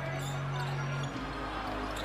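A basketball being dribbled on a hardwood arena court, the bounces soft under a low arena murmur and a steady low hum.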